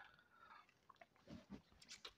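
Near silence: room tone with a few faint small clicks and soft movement noises.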